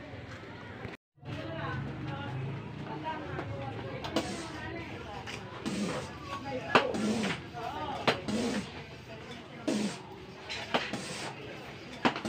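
High-pressure hand pump being worked to fill a PCP air rifle: a short hissing stroke about every second or so, starting about four seconds in, with voices in the background.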